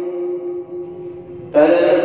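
A cleric's voice chanting in long held notes, a melodic recitation. The held note fades about half a second in, and a new, louder held note begins about one and a half seconds in.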